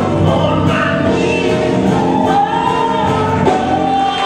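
Live soul band playing with a male singer belting over it, backing voices behind him; near the end he holds one long high note.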